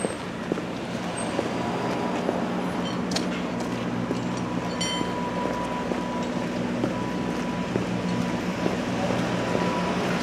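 Fire engines idling: a steady low diesel hum with a faint high steady tone that comes and goes.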